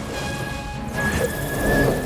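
Cartoon rocket-jet sound effect, a loud rushing noise that swells about a second in, over background music.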